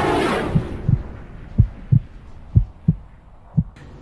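Heartbeat sound effect: low, muffled thumps in lub-dub pairs about once a second, under a reverberant swell that fades out over the first second or so.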